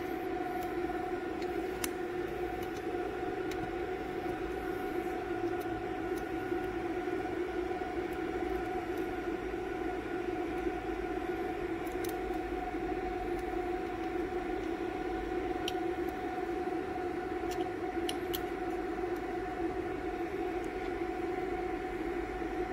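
Steady pitched whir from the cooling fans of a running fiber laser marking machine, with a few faint ticks as a hex key works the laser head's mounting screws.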